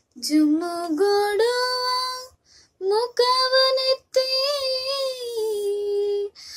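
A young woman singing a Kannada song solo and unaccompanied, holding long notes with a slight waver. The voice comes in three phrases, broken by short breaths about two and a half and four seconds in.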